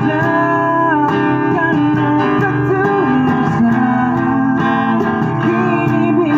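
Live acoustic guitar strummed over a steady cajon beat, with a man singing, all amplified through a small PA speaker.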